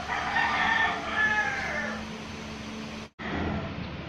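A rooster crowing once, a call of about two seconds that falls in pitch near its end, over a steady low hum.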